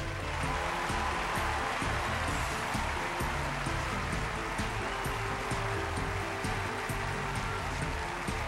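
Audience applause and cheering over stage music with a steady beat.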